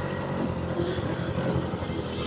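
Rented motorbike engine running steadily.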